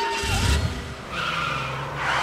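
A held sung note from a men's street singing group fades out in the first half second. It gives way to a vehicle's low rumble and a rushing whoosh that swells in the second half.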